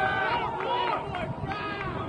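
Several people's voices shouting and calling out at once at a baseball field, overlapping so that no clear words come through.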